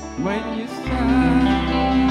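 Live band music: held keyboard chords, then about a quarter second in a lead line with sliding pitch comes in over the bass. The band gets louder at about one second.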